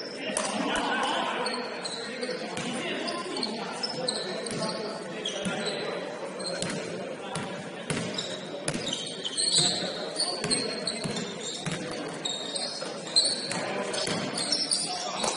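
Indoor pickup basketball: a basketball bouncing on a hardwood court, with short high sneaker squeaks and indistinct shouts from players, all echoing in a large gym hall.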